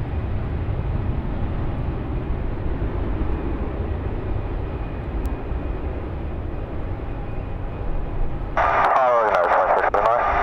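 Southwest Airlines Boeing 737 jet engines at takeoff power on its takeoff roll: a steady low rumble. About eight and a half seconds in, a tinny air traffic control radio transmission comes in over it.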